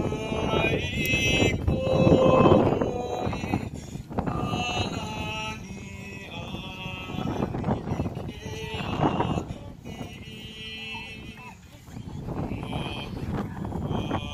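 Voices chanting a Hawaiian oli, in long wavering phrases with short breaks between them.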